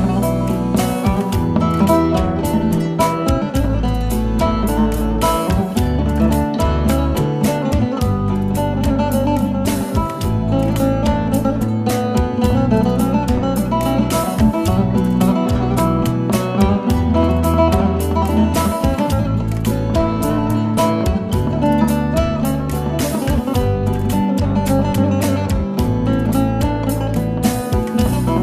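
Bağlama (saz) played with a plectrum, a quick picked folk melody in B (si karar), over a backing track with bass and percussion.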